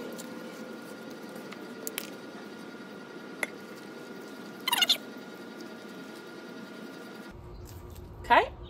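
Hand trowel digging into gravelly soil, with a few sharp clicks. A short, high chirp about halfway through.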